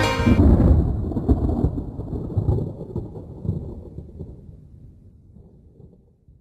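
A band's music breaks off just after the start, and a low, rolling rumble of thunder takes over, fading out gradually.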